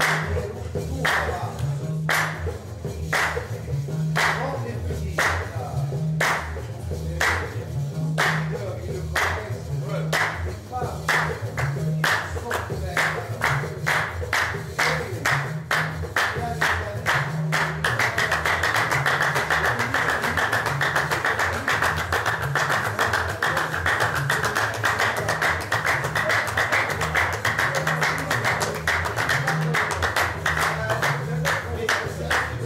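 Gnawa music: a guembri (three-string bass lute) plays a repeating low bass line under group handclaps. The claps start about one a second and steadily speed up, becoming a fast, dense clapping from a little past the middle.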